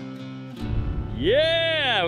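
Acoustic guitar background music that drops out about half a second in, then a man's loud, drawn-out triumphant shout.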